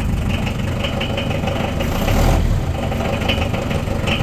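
Unimog diesel engine idling steadily at a freshly set idle speed, with a short louder patch about halfway through.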